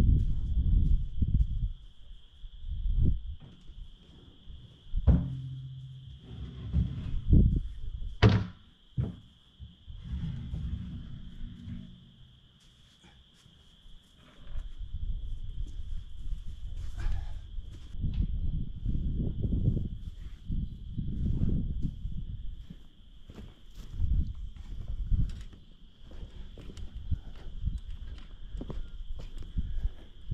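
Footsteps on dirt and irregular low thuds as a plastic barrel pig feeder on a wooden base is carried in and set down, with a sharp knock about eight seconds in.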